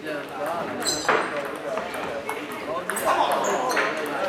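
Table tennis rally: the celluloid ball clicking off the paddles and the table in quick, irregular strokes, with short high squeaks about a second in and near the end, over chatter in a large hall.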